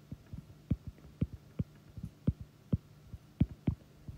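Stylus tapping on a tablet screen while handwriting letters and bond lines: sharp, irregular taps about three a second, over a faint steady low hum.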